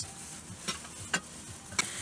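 Faint rustling and shuffling with three or four light clicks and knocks, as things are handled and shifted inside the car.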